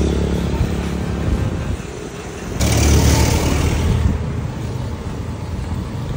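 Road traffic passing close by: motor vehicles and motorcycles going past, with one louder pass coming in suddenly about two and a half seconds in and fading by four seconds.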